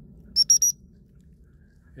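Dog whistle blown in three short, quick pips of one steady high pitch: a pip-pip-pip recall signal calling a gundog back.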